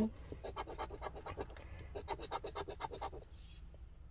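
A coin scraping the latex coating off a scratch-off lottery ticket in quick back-and-forth strokes, several a second, stopping about three seconds in.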